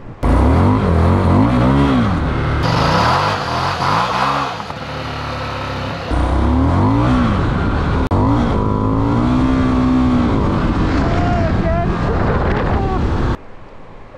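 Indian FTR 1200's V-twin engine revving hard under acceleration on wet roads, heard in several short cut-together clips. Its pitch climbs and drops again with each throttle opening and gear change.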